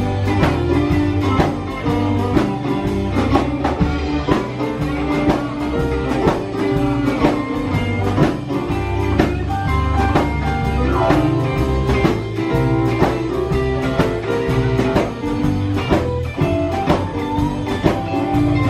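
Live blues-rock band playing an instrumental passage: electric guitar, electric keyboard and drum kit keeping a steady beat.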